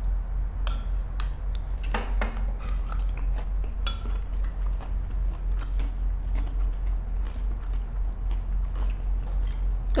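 Close-miked chewing and crunching of crispy fried turmeric rice and shredded chicken, with scattered light clicks of spoons and chopsticks against ceramic bowls, over a steady low hum.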